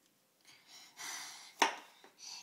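Noise putty being squeezed into its plastic pot by hand: a short rush of noise, then a single sharp pop about a second and a half in.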